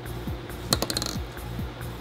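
A brief rattle of small hard clicks about 0.7 seconds in, a headspace gauge clinking against its clear plastic vial as it is put away or taken out, over background music with a steady beat.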